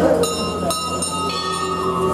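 A puja hand bell rung in repeated strokes, about two a second, each stroke leaving a high metallic ringing that overlaps the next, over a steady low hum.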